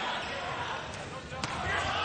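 Basketball game crowd hubbub in the arena, with a ball bouncing on the court about one and a half seconds in.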